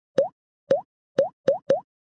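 Five short cartoon 'bloop' pop sound effects, each a quick upward slide in pitch. The first two are about half a second apart; the last three come closer together.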